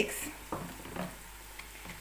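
Wooden spoon stirring gram flour into thinned yogurt in a plastic jug: faint scraping with two soft knocks, about half a second and a second in.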